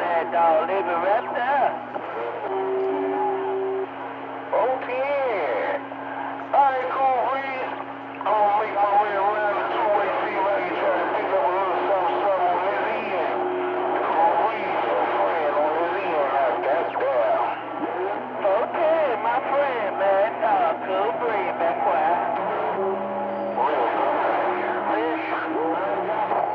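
Voices coming over a CB radio receiving on channel 28: muffled, garbled and cut off at the top, too unclear to make out. Steady tones come and go over the talk, and a constant low hum runs underneath.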